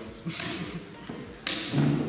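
Wooden chess pieces and chess-clock buttons knocked down on a table during fast bughouse play, with a sharp knock about one and a half seconds in.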